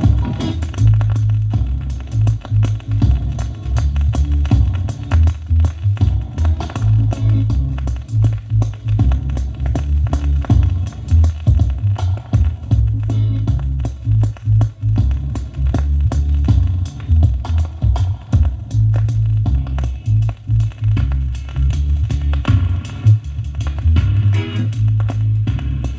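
Roots reggae dub version played from a 7-inch vinyl single: mostly a heavy bass line and drums with sharp rim and snare hits.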